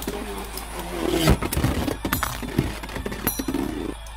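A Beyblade top spinning and wobbling on a plastic stadium floor, with irregular clatters and clicks and a louder knock about a second in.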